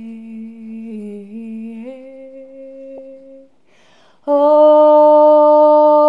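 A woman's voice holding long, wordless humming notes. A soft low note steps up in pitch about two seconds in and fades out, then after a breath a much louder held note begins a little past the four-second mark.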